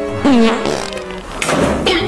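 A comic falling-pitch sound effect over light background music, then two short noisy clatters as plastic drink bottles topple onto a table.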